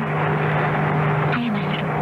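Radio-drama sound effect of a small single-engine plane's engine droning steadily, heard as from inside the cabin. A brief voice sound comes about a second and a half in.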